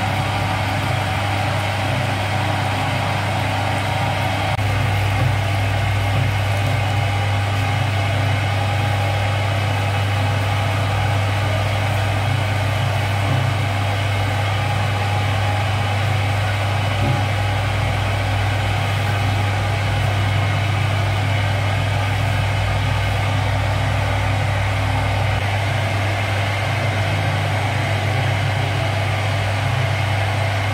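Commercial bakery dough mixer running steadily, its motor giving a constant low hum while the dough hook kneads a heavy batch of bread dough in a steel bowl.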